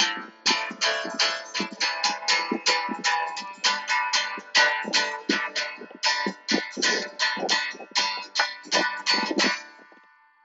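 Acoustic guitar strummed in a steady rhythm of several strokes a second. The strumming stops near the end and the last chord rings away.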